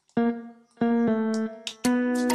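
Sampled electric-guitar preset ('Brighter Humbucker AC15') in FLEX playing single notes from the FL Studio piano roll: three plucked notes about a second apart, each dying away, as notes are auditioned by ear to find the song's key.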